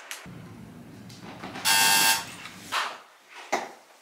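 Electric door buzzer sounding once, a loud harsh buzz lasting about half a second, followed by a couple of light knocks.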